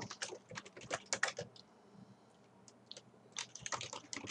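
Typing on a computer keyboard: a quick run of keystrokes, a pause of about a second with only a couple of taps, then another run near the end.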